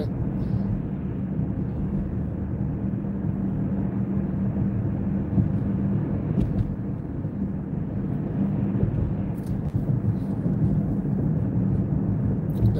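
Steady road and engine noise heard inside a car's cabin while it cruises along a road, with a steady low hum under it.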